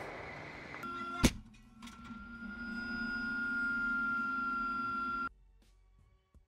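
Tank gunfire dying away, then a single sharp crack about a second in. A steady droning hum with a high whine follows, swelling and then cutting off abruptly near the end.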